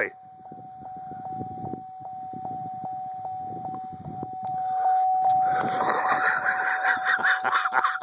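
Someone moving fast on foot through grass: irregular footfalls and rustling, with a louder pulsing rush, like hard breathing or wind on the microphone, from about halfway through. A steady high tone with a faint regular tick, about two or three a second, runs underneath.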